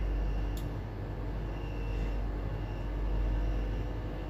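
Steady low background rumble, with a faint click about half a second in.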